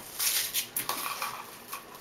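Ribbon crinkling and rustling as fingers pinch and fold it into bow loops, in a few short irregular bursts.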